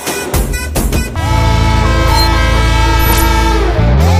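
Audience clapping briefly, then about a second in a long, steady train-horn blast, a sound effect held for nearly three seconds over music.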